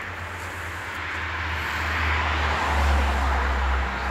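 A road vehicle passing by: a low rumble and tyre noise that swell to a peak about three seconds in, then start to fade.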